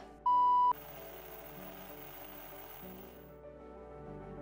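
A single electronic beep, one steady tone about half a second long, sounding just after the start and cutting off sharply. Soft background music continues quietly under and after it.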